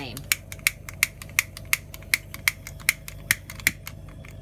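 Flint spark striker squeezed again and again at the mouth of a Bunsen burner, about ten sharp clicks at nearly three a second, stopping shortly before the end. These are strikes to ignite the gas flowing from the burner, which has not yet lit.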